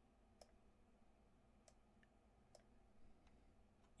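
Near silence broken by about four faint clicks of a computer mouse, spread a second or so apart.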